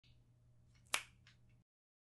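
A single sharp clap of the hands about a second in, with a few faint clicks around it; then the sound drops out to dead silence.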